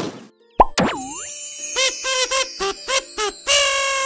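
A playful cartoon music sting: a rushing noise fades out, then after a short gap a sharp springy swoop whose pitch dips and rises again, a high shimmering glide, a quick run of about seven short pitched notes, and a held closing chord near the end.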